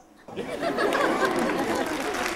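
Studio audience applauding with crowd chatter mixed in, starting suddenly about a quarter-second in after a brief hush and holding steady.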